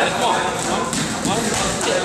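Boxing gloves smacking focus mitts, a few sharp punches in the second half, over men's voices in a gym.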